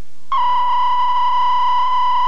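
A steady 1 kHz line-up test tone, as recorded on videotape alongside colour bars. It comes in suddenly about a third of a second in and holds one unchanging pitch.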